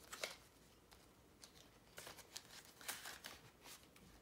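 Faint rustling and crinkling of paper banknotes and clear plastic binder envelopes being handled, in a handful of short, scattered strokes.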